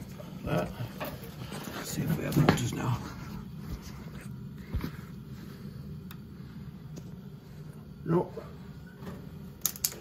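Indistinct voices over a steady low hum, with a few sharp small clicks from handling the wiring and jumper at a boiler's switching relay.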